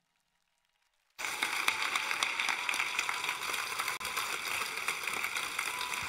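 Theatre audience applauding, the dense clapping starting abruptly about a second in after a moment of silence and holding steady.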